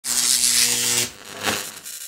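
Electronic glitch sound effect for an animated logo intro: a loud buzzing static for about a second that cuts off abruptly, then a short swell halfway through that fades away.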